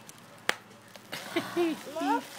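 A single sharp pop of a bubble-wrap bubble being squeezed, about half a second in, followed from about a second in by a person's voice laughing or vocalising.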